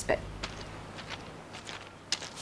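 A man's footsteps walking away, a handful of soft, irregularly spaced steps.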